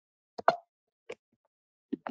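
A few short, sharp clicks at a computer with silence between them. Some come in quick pairs, like a button pressed and released; the loudest is about half a second in.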